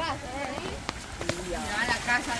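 Voices talking quietly over a steady hiss of rain and shallow floodwater running across a dirt road, with a couple of brief clicks in the middle.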